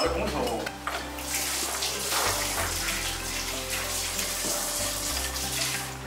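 Running water, starting about a second in and stopping just before the end.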